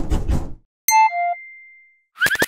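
Doorbell sound effect: a two-note falling ding-dong chime about a second in, its high ring fading away. Just before it, a low rumbling sound cuts off after the first half-second.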